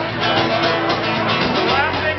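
A live folk-rock band playing: strummed acoustic guitar and ukulele over bass and drums, in a short gap between sung lines.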